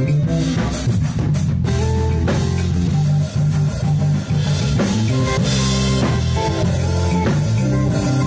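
Live band playing an upbeat instrumental groove: drum kit, bass guitar and guitar, with no singing heard.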